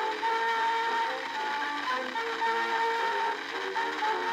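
An orchestra plays a melody on an early acoustic phonograph recording from about 1900. The sound is thin, with almost no bass, over a steady hiss.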